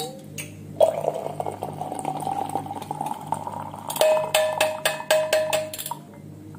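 Hot milky chai pouring in a steady stream through a steel tea strainer into a flask, then the metal strainer tapped quickly about eight times, clinking and ringing, to shake out the last drips.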